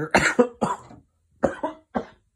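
A person coughing in a fit: a quick run of three coughs, then two or three more about a second and a half in. It is the cough of an illness with a sore throat that the person suspects may be Covid.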